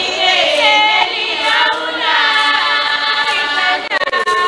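A large crowd of Swazi maidens singing a traditional song together in chorus, unaccompanied, with voices sliding between notes.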